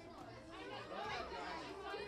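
Indistinct chatter of voices, with no words made out; it gets louder about halfway through.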